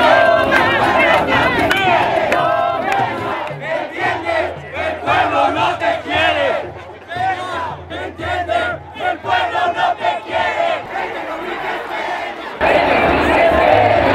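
Crowd of street protesters shouting, many voices overlapping at once. The crowd turns abruptly louder near the end.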